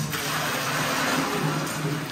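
Grey watery slurry pouring from a metal pail into a plastic bucket: a steady gushing splash that starts suddenly and runs for about two seconds.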